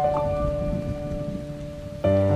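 Background music ending: a few held notes fade away over a steady low rustling noise.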